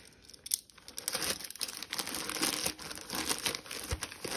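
White plastic poly mailer crinkling as it is torn open by hand and the contents are pulled out, quiet for about the first second and then a dense, continuous crackle. A low thump comes near the end.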